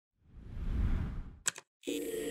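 Sound design of a news channel's logo intro: a low rushing swell for about a second, two quick sharp clicks, a brief silence, then a held musical chord starting just before the end.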